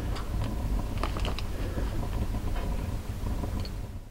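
Wood fire crackling in a small wood stove: scattered small pops and ticks, busiest about a second in, over a low steady rumble.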